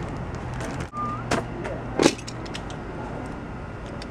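A plastic bag crinkling and small objects being handled, with a sharper clatter about a second and a half in and a louder one about two seconds in. A brief rising tone sounds about a second in. A steady low hum lies under it all.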